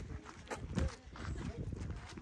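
Footsteps on dry, packed dirt and gravel, with faint voices in the background.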